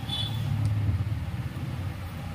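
A low, steady rumble with no clear pitch.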